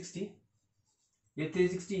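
A man's voice lecturing, broken by about a second of silence in the middle.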